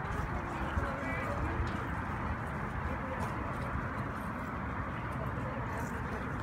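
Steady outdoor background noise with faint voices of people talking nearby, and a brief chirp about a second in.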